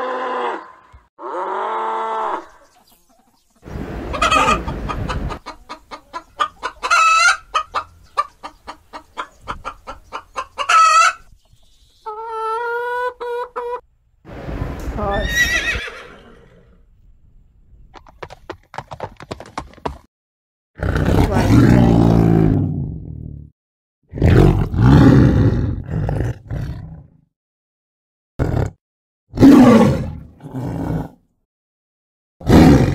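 A string of separate animal calls with short gaps between them: a cow mooing at the start, a fast run of chicken clucks, a horse neighing about midway, and deep big-cat roars near the end.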